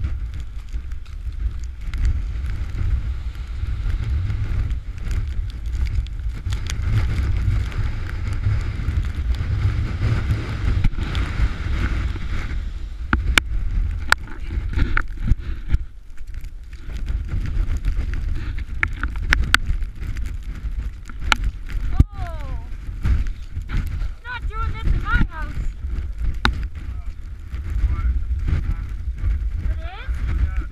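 Storm wind buffeting the camera's microphone in a blizzard: a heavy, steady low rumble with scattered clicks and knocks. About 22 and 25 seconds in come brief wavering, gliding tones.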